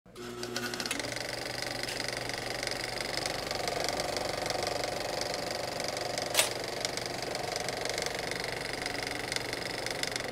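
Film projector sound effect: a steady, rapid mechanical clatter with a whirring hum, with one sharp click about six seconds in.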